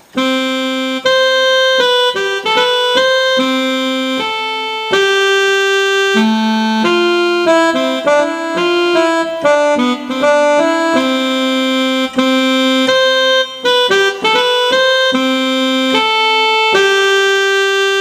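A slow single-line tune in a saxophone-like voice on an electronic keyboard, one steady held note at a time.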